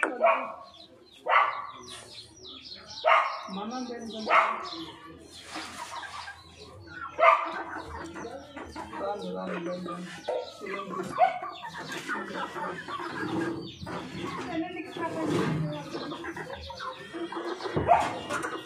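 Flock of young aseel chickens clucking and calling, with a handful of loud sharp calls in the first seven seconds or so, then a steady jumble of overlapping clucks and calls.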